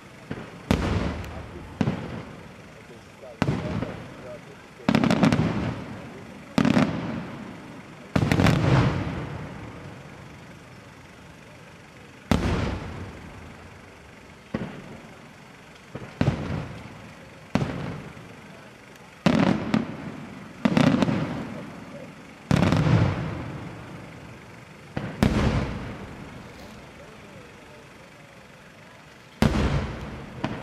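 Aerial firework shells bursting one after another, each a sharp bang followed by a rolling echo that dies away. They come every second or two, with a pause of a few seconds about a third of the way in and another just before the end.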